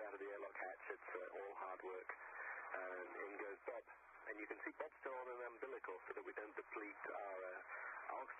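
Speech throughout, heard over a thin, narrow-band radio-like channel.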